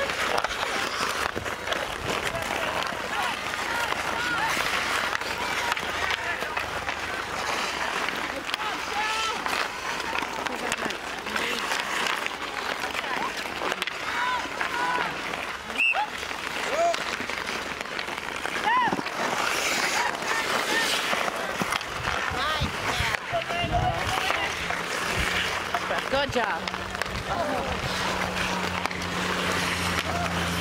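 Outdoor ice hockey play: skate blades scraping on the ice and sticks clacking against the puck, with voices of players and onlookers calling in the background. A low steady hum joins in about three-quarters of the way through.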